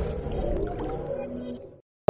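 Tail of an electronic channel-ident jingle fading out, with a few last tones decaying. It drops to silence just before the end.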